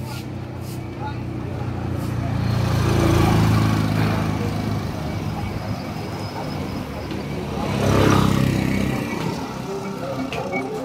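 Motorcycles passing close by on a dirt street, their small engines swelling and fading twice, about three seconds in and again about eight seconds in.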